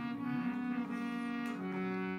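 Harmonium playing held reed notes in chords, shifting to a new note about one and a half seconds in.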